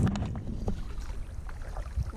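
Wind rumbling on the microphone of a camera mounted on a kayak, with a few faint splashes and knocks of the kayak being paddled through calm water.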